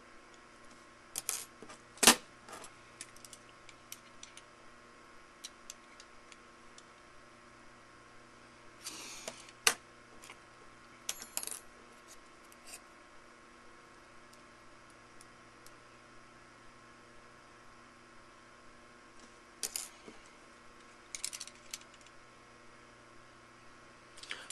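Scattered small metallic clicks and clinks from handling a steel digital caliper and a small machined aluminium part as the caliper jaws close on the part to measure it. There is a brief scrape about nine seconds in.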